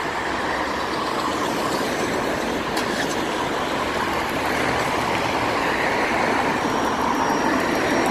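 A BMW saloon rolling up slowly and pulling in close by, heard as steady car and road noise over passing traffic, growing slightly louder as it nears.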